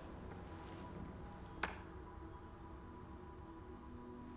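A single sharp click about a second and a half in, a small vial set down on a tabletop, over a faint, steady low drone.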